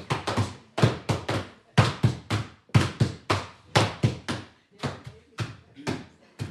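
Wooden laundry beaters striking linen laid on a wooden table, in a steady rhythm of three strikes at a time, about once a second.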